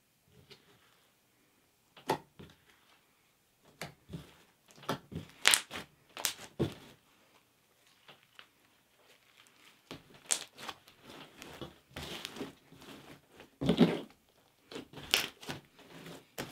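Clear PVA-glue glitter slime being kneaded, pressed and stretched by hand, giving irregular sticky clicks and small squelching pops with pauses between them. A few louder pops come about halfway through the first half and again near the end.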